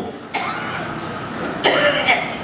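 A man coughing near a handheld microphone: a long breathy stretch, then a sharper burst near the end.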